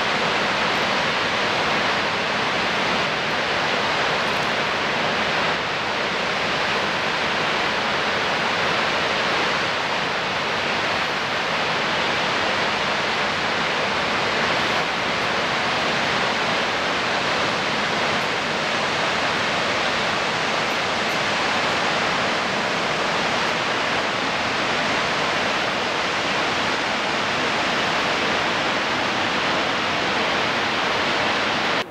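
Upper Whitewater Falls, a tall multi-tiered cascade, pouring with a steady, unbroken rush of falling water.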